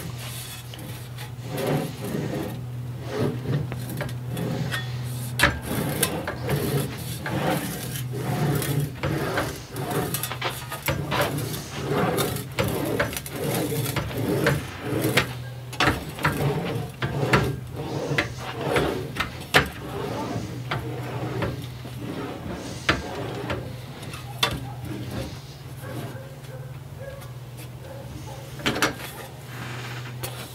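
Sheet steel being rolled back and forth through an English wheel between the upper wheel and a slight-radius lower die, shaping a curve into a patch panel. It makes repeated rolling, rubbing strokes about once a second over a steady low hum, growing quieter in the last few seconds, with one sharp knock near the end.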